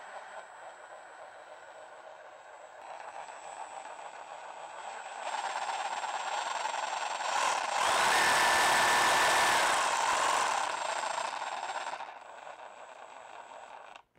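Makita DJR187 18 V brushless cordless reciprocating saw running with no blade and no load. Its speed rises in steps as the variable-speed trigger is squeezed, reaching full speed about eight seconds in, then falls back. It cuts off abruptly at the end as the electric brake stops it.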